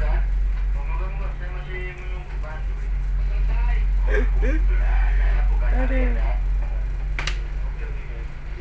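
Steady low drone of a harbour tug's engines, heard from inside its wheelhouse, with faint voices over it.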